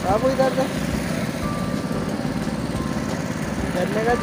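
Small engine of a roadside sugarcane juice crusher running steadily, with a short bit of a voice at the start and again near the end.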